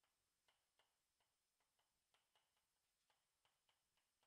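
Chalk writing on a chalkboard: a faint, irregular run of small sharp clicks, three or four a second, as the chalk strikes and lifts off the board.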